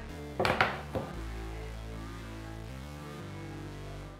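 A few sharp knocks and clatter about half a second in, from the iPhone box and lid being handled on a wooden tabletop, over background music with long held notes.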